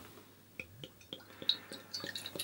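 Beer being poured from a glass bottle into a tasting glass: faint, irregular glugging and splashing that begins about half a second in.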